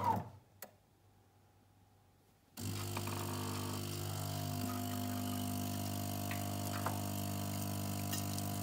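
Bean-to-cup espresso machine's grinder motor winding down, then a single click and a pause of about two seconds. About two and a half seconds in, the machine's water pump starts with a sudden steady hum and keeps running as it pushes hot water through the freshly ground coffee to start brewing.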